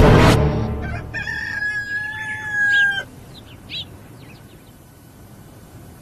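A rooster crowing once, a long drawn-out call of about two seconds, followed by a few short bird chirps: the usual sound cue for daybreak.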